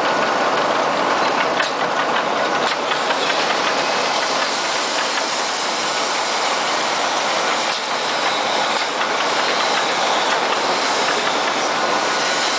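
ZP33 33-station rotary tablet press running: a dense, steady mechanical clatter of many rapid fine clicks from the turning turret and punches, with pressed tablets rattling out along the discharge chute and conveyor.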